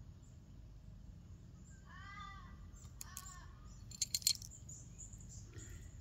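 A raven calling twice, two drawn-out arching caws about a second apart. A short cluster of sharp clicks follows about four seconds in.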